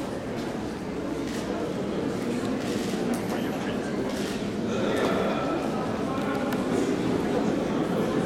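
Many people talking at once in a large hall, an indistinct crowd chatter with a few faint taps mixed in. The chatter grows a little louder about halfway through.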